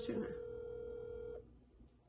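A phone's ringback tone playing over the speakerphone while a call is placed: one long, steady ring tone that stops about one and a half seconds in, with no answer.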